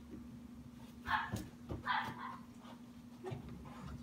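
Puppy inside a plastic crate making two short vocal sounds, about a second apart.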